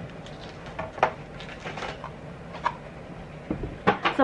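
A few light knocks and rustles of cardboard advent calendar boxes being handled and passed, with a sharper knock about a second in and a cluster of knocks near the end, over a faint steady low room hum.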